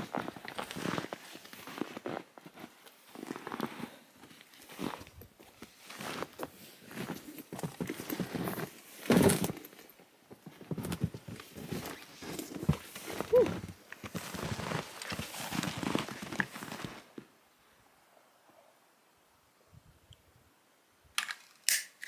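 Snowshoe footsteps crunching through deep snow in slow, uneven steps about a second apart, stopping a few seconds before the end. A short stretch of near silence follows, then a couple of sharp clicks.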